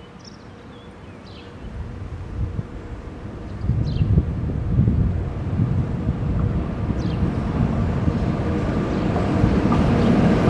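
An approaching train rumbles, getting steadily louder from about two seconds in, as an electric freight locomotive nears the level crossing.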